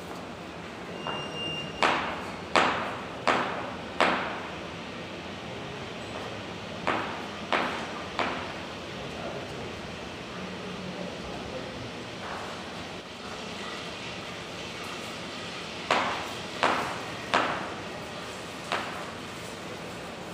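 Kitchen knife cutting a potato on a chopping board: single sharp knocks of the blade meeting the board, roughly one every two-thirds of a second, in three groups of three to five strokes with pauses between, over steady background noise.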